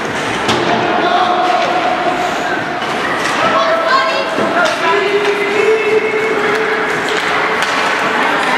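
Ice hockey play at the boards: several sharp thuds and knocks of the puck, sticks and players hitting the boards and glass, with spectators' voices and long held shouts in the rink.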